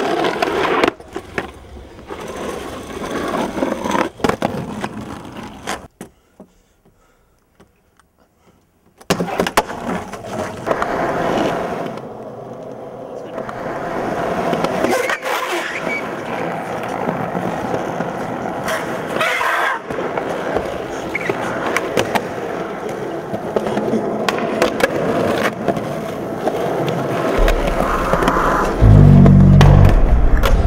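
Skateboard wheels rolling on smooth concrete, with sharp clacks of the board and people's voices in the background. The sound drops out for a few seconds early on, and a deep bass music beat comes in near the end.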